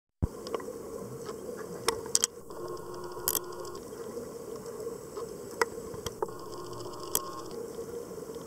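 Underwater ambience picked up by a camera during a reef dive: a steady low hum and hiss with scattered sharp clicks and crackling. It starts abruptly just after the opening.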